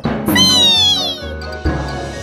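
A cartoon creature's high, squeaky cry: one call falling in pitch, over light background music. A low drum beat comes in near the end.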